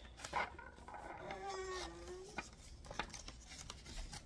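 A small child's drawn-out vocal sound, held on one pitch for about a second, with the rustle and tap of paper bills being handled.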